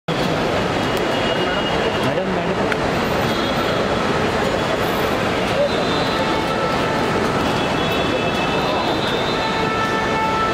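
Steady mix of road traffic noise and a crowd of indistinct voices at the kerbside.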